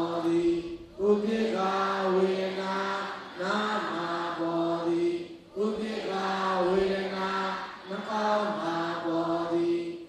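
Buddhist chanting by a male voice: a steady recitation in phrases of about two seconds, each held mostly on one level note, with a brief breath between phrases.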